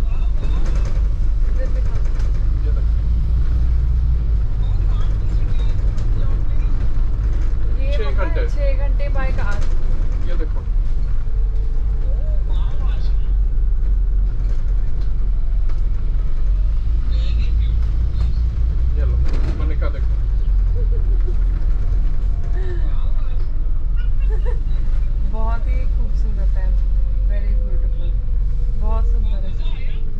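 Open-top double-decker bus in motion: a steady low rumble of the engine and road running, with wind buffeting from the open upper deck. Passengers' voices come and go over it.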